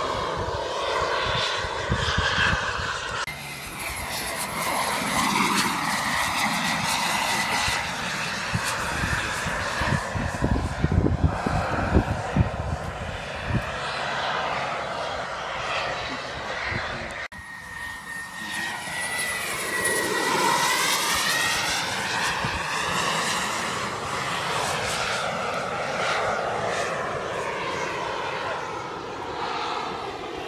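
Radio-controlled model HondaJet's jet engines whining in flight. The pitch swings up and down as the model flies past again and again, over a thin steady high whine.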